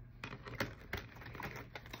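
Tarot cards being shuffled and handled, a quiet string of irregular clicks and flicks as the cards strike one another.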